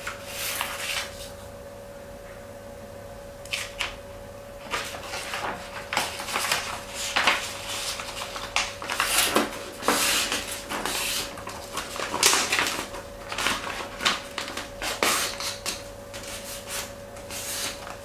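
A sheet of kraft wrapping paper printed like newspaper being folded and creased by hand: crisp rustles and crackles come and go, after a quiet spell in the first few seconds. A faint steady hum runs underneath.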